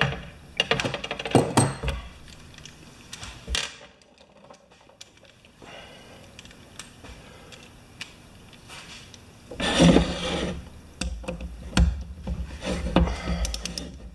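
Hand tools on a pressure-washer pump head: a socket ratchet clicking and steel tools knocking and clinking against the metal as the head bolts are run down snug before torquing. Clusters of clicks come early and near the end, with a louder rattle of tool handling about ten seconds in.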